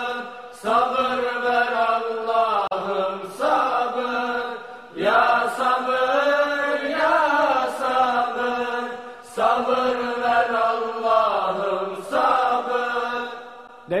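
Turkish ilahi, an Islamic hymn, sung by an unaccompanied voice. It holds long, wavering melismatic notes in about five phrases, each a few seconds long, with short breaks between them.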